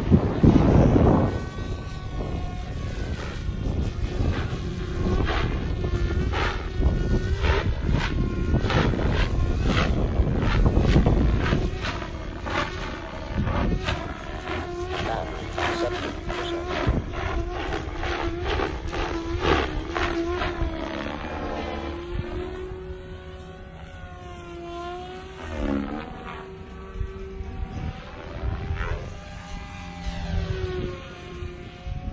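Electric Goblin 500 Sport RC helicopter in flight, its main rotor and motor giving a steady whirring whine. The rotor tone rises and falls with the manoeuvres and sweeps up and down in pitch near the end. A burst of wind noise on the microphone comes at the start.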